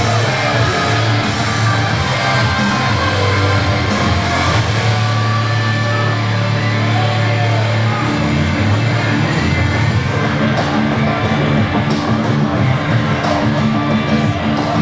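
Heavy rock music with electric guitar and drums, a wrestler's theme played after the win.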